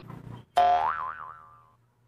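A cartoon 'boing' sound effect: a sudden springy twang about half a second in, its pitch wobbling as it fades away over about a second.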